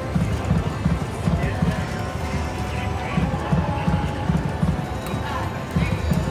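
IGT Prowling Panther video slot's game sounds during reel spins: music with a steady drum-like beat of about four pulses a second.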